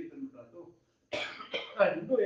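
A man speaking breaks off, and about a second in gives a sudden loud cough and clears his throat in a few harsh bursts before going on talking.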